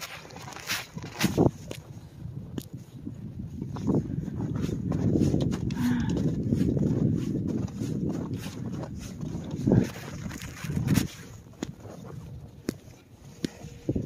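Footsteps crunching through deep snow, irregular crisp steps, with gusts of wind on the microphone rumbling through the middle.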